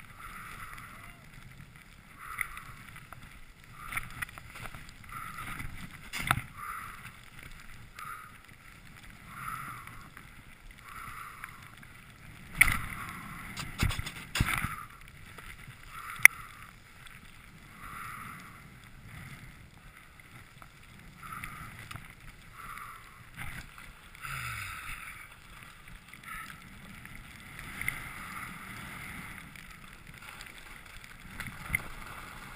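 Skis turning through soft snow, a swish with each turn about once a second, with a few sharp knocks from the skis, the loudest about halfway through.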